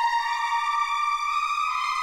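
Background film score: a sustained chord of held tones that moves to new notes near the end.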